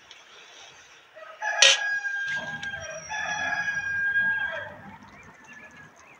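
A rooster crowing once: a long call of about three and a half seconds, starting about a second in. A sharp click comes near its start.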